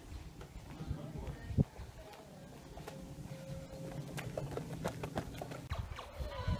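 Irregular footsteps of someone walking with a handheld camera, over a low rumble of handling and wind on the microphone.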